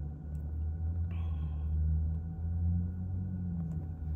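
Steady low vehicle rumble, with a brief higher tone about a second in.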